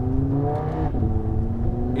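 Audi RS3's turbocharged five-cylinder engine running under way, heard inside the cabin over low road and wind rumble; its note rises slowly, dips briefly about a second in, then rises again.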